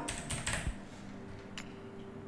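Computer keyboard being typed on: a quick run of about five keystrokes in the first second, then one more a little later.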